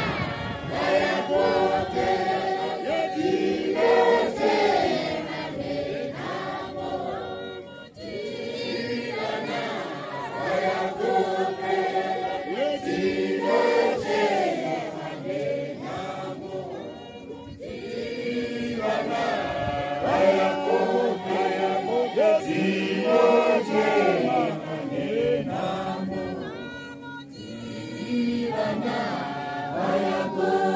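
A choir of voices singing a Shona hymn unaccompanied, in long phrases with brief breaks about every nine seconds.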